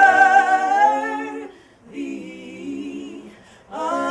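Three women singing a gospel song a cappella in harmony. A loud held chord fades out about a second and a half in, the voices go on softly, and they come back in strongly near the end.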